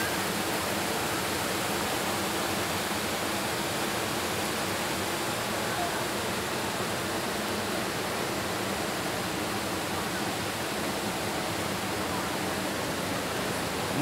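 A steady, even rushing noise that holds at one level throughout, with no distinct events.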